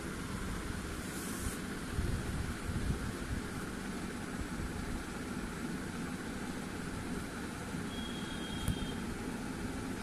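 Steady low background hum with a faint even hiss, without distinct events: room tone.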